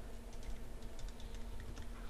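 Typing on a computer keyboard: light, irregular key clicks as a short name is typed.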